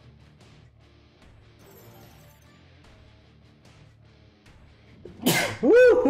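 Faint slot-game music and jingles, then about five seconds in a loud, sudden sneeze from a man.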